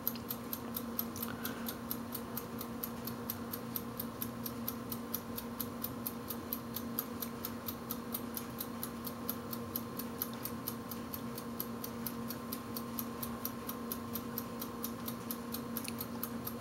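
Steady, rapid ticking, about four ticks a second, over a low, constant hum.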